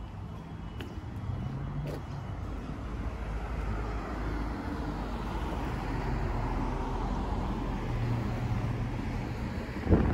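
A car driving past on the street: its tyre and engine noise builds over several seconds, is strongest past the middle, then eases slightly.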